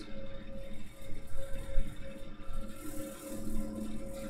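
Steady background hum with a faint irregular low noise underneath.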